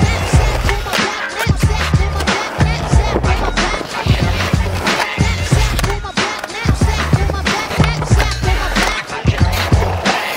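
Music with a steady beat, with skateboard wheels rolling on concrete.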